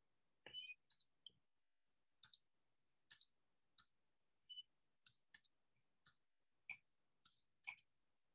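Near silence broken by faint, irregular clicks, about two a second.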